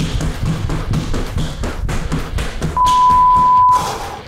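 Quick foot taps and thuds from a fast in-and-out footwork drill, over background music. About three seconds in, an interval timer gives one steady beep about a second long, marking the end of the work interval.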